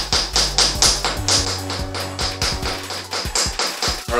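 Wooden toy hammer tapping a wooden chisel into a dinosaur dig-kit egg: quick, evenly spaced taps, heard over background music with a bass line.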